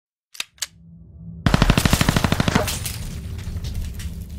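Two sharp clicks, then a fast burst of automatic gunfire lasting about a second, used as a logo-intro sound effect. The shots trail off in an echo over a low rumbling music bed.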